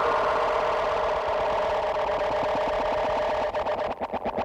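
Electronic drum and bass outro: a dense, buzzing synth texture pulsing very rapidly, breaking into chopped stutters near the end.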